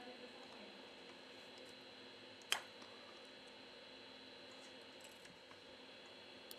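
Near silence: quiet room tone with a few faint ticks and one sharp small click about two and a half seconds in, from handling the opened phone and repair tools.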